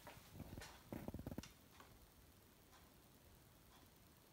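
A few faint clicks and light taps from handling a small spirit hydrometer in its narrow test tube over a shot glass, bunched in the first second and a half, then near silence.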